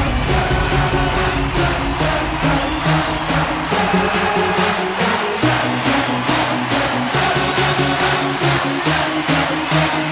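Hard dance track playing: electronic dance music with a fast, steady beat and sustained synth and bass lines, without vocals.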